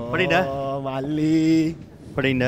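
A man's voice chanting in a sung, sing-song way. About a second in it settles on one long held note, which breaks off shortly before the end.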